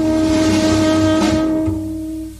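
Tenor saxophone holding one long, steady note in a slow jazz ballad, over a cymbal swell and low bass and piano; the note fades near the end.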